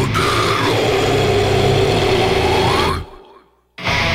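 Deathcore track with the drums removed: heavy distorted guitars and a long held vocal. The band stops dead about three seconds in, leaving near silence. It comes back in just before the end.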